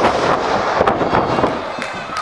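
A wrestler's body slams onto the ring canvas with one sharp crash at the very start, followed by a few lighter knocks over the noise of the ring and a small crowd.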